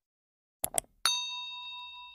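Subscribe-animation sound effect: two quick clicks about two-thirds of a second in, then a single bright bell ding, as for a notification bell, that rings on and slowly fades.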